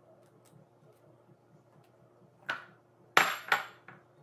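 Glass bowl clinking against a granite countertop: one light knock, then two louder clinks with a short high ring near the end.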